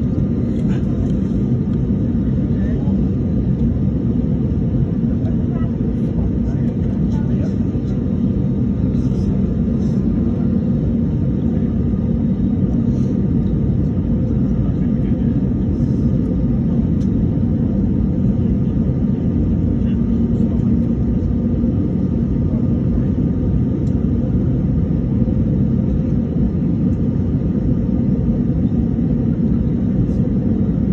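Steady low rumble inside an airliner cabin, its engines idling while the aircraft stands still on the ground. The noise holds at one level throughout.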